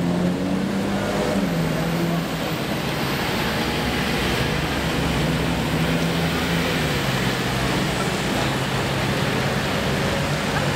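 Road traffic noise with a vehicle engine humming, its pitch stepping up and down a few times as it holds.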